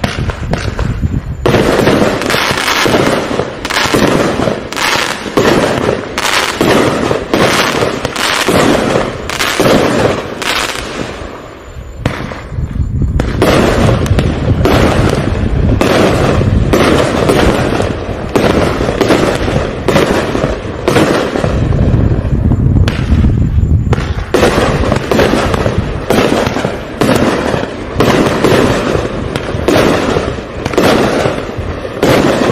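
A 45-shot, 500-gram consumer fireworks cake firing shot after shot, about two a second, each a sharp bang of launch and burst. There is a brief lull about twelve seconds in and a short gap about two-thirds of the way through, with a heavier low rumble in between.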